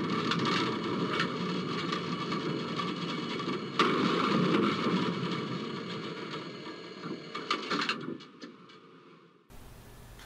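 Tram running on its rails and slowing, heard from inside the driver's cab. The cab rumbles and rattles steadily, with a sharp, louder knock about four seconds in, and the noise fades away gradually as the tram slows.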